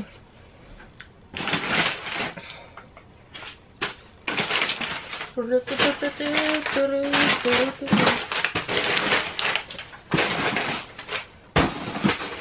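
Crinkled kraft paper packing fill rustling and crackling in bursts as a hand digs through a cardboard box, with a plastic bag of containers crinkling near the end.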